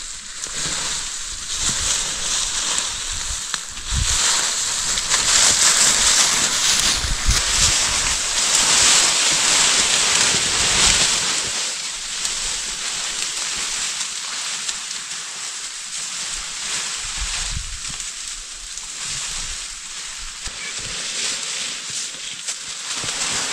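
Foliage rustling and rushing in the wind, an even hiss that swells about four seconds in and eases off after about eleven seconds. A few low thumps come through underneath.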